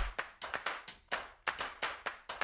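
A run of sharp, clap-like taps at a fairly even pace, about three a second, at low level.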